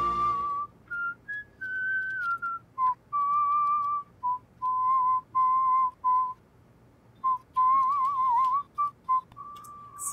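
A man whistling a tune: a string of short and held notes with slight wavers in pitch, a brief pause a little past the middle, and a warbling run near the end.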